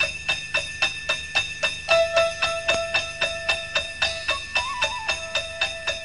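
Instrumental Christmas music with no singing: sleigh bells shaken in a steady quick rhythm over held notes, with a short melody line partway through.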